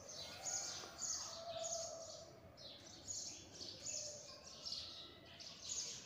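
Small birds chirping faintly in the background, a steady run of short, high, descending chirps about twice a second.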